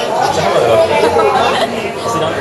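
Chatter of many people talking at once in a large indoor space, several voices overlapping.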